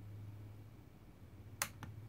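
Two sharp clicks about a quarter of a second apart, the first louder, as a switch is worked on the yellow bench power box feeding a car stereo, heard over a steady low hum.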